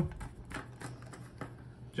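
A few irregular small metal clicks as a hex wrench turns the tension-lock screw on top of a stainless steel self-closing door hinge, tightening it to hold the spring setting.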